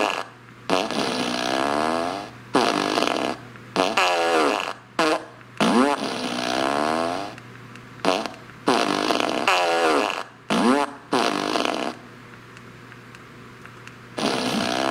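Remote-controlled Fart Machine No. 2 (Boom Box Blaster) playing a run of electronic fart sounds through its speaker, some long with wavering, sliding pitch and some short, separated by brief gaps and stopping near the end. The sounds are computer generated rather than recordings of real ones.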